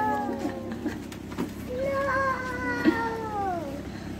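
A child's drawn-out vocal cries: one trails off at the start, then a longer one is held on a steady pitch for about two seconds and slides down at the end.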